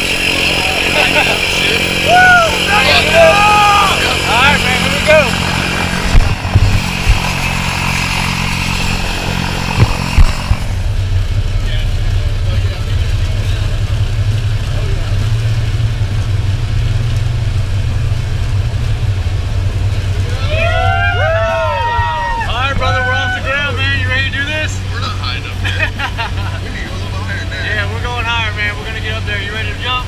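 Single-engine high-wing propeller plane's piston engine running. A steady drone is heard from close by for the first ten seconds, with a few knocks. After a cut it becomes a stronger, deeper drone on the runway, with voices shouting over it later on.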